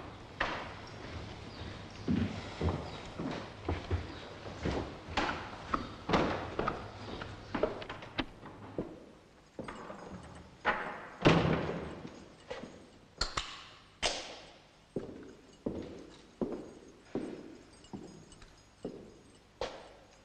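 A run of sharp thuds and knocks with echoing tails, irregular at first, with the loudest thud about eleven seconds in, then evenly spaced at a little over one a second.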